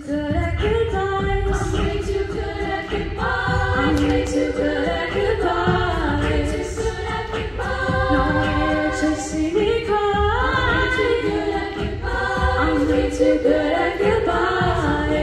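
A mixed-voice high-school a cappella group singing in close harmony, voices only, with sustained chords that shift every second or so and slide upward about ten seconds in.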